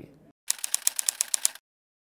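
Typewriter key-click sound effect, a rapid run of sharp clicks at about ten a second for about a second. It breaks off, then a second short run of clicks starts near the end.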